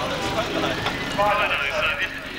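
People talking over the steady low running of a vehicle engine at idle, with the voices loudest in the second half.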